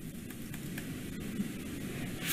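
Steady low hiss of background noise with no distinct event.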